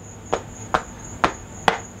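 Four sharp finger snaps, roughly two a second, in an even rhythm.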